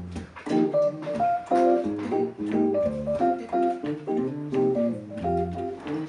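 Instrumental jazz passage with no vocals: piano playing chords and a melody over an electric bass line.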